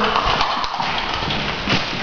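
Footsteps on a hard floor, a few separate knocks over a noisy background, with the loudest step near the end.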